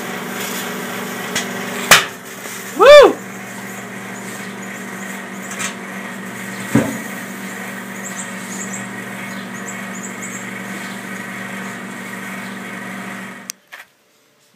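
Microwave oven running with a steady hum while a lithium-ion battery pack burns inside it. There is a sharp crack about two seconds in, then a loud, brief tone that rises and falls in pitch, and a few smaller knocks. The hum cuts off suddenly near the end as the oven stops.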